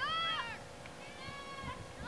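Two high-pitched, drawn-out calls: a short one that rises and falls at the start, and a longer, steadier one about a second in.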